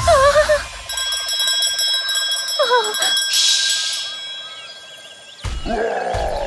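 Animated-cartoon sound effects: a character's short wavering vocal exclamations, one at the start and another about two and a half seconds in, over a steady high ringing tone. A brief hiss comes about three and a half seconds in, and a sharp hit near the end.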